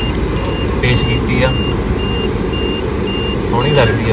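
Mahindra Scorpio cabin at highway speed: steady road and engine rumble, with a dashboard warning chime beeping about twice a second.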